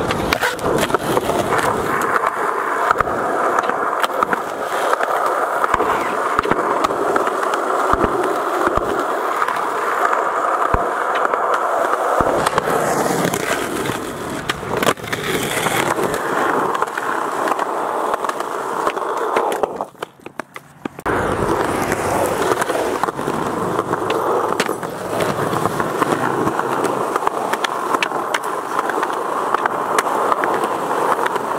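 Skateboard wheels rolling on rough concrete, a continuous rumbling roll, broken by occasional sharp clacks of the board's tail and landings. The rolling drops out briefly about two-thirds of the way through.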